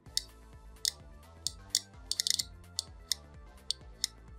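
Passive piezo buzzer giving little clicks as its pins touch the terminals of a 9-volt battery: about a dozen sharp, irregular clicks, with a quick run of them a little past the middle. A single click and no tone under a constant DC voltage is the sign that this is a passive buzzer with no oscillator inside.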